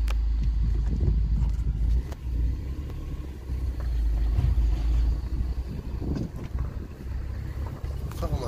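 A car driving slowly, its engine and road noise making a low, uneven rumble heard from inside the cabin.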